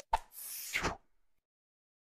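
Animation sound effects: a short click, then a swoosh lasting about two thirds of a second.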